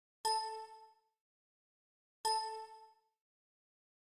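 Two identical bell-like dings about two seconds apart, each struck sharply and ringing out in under a second.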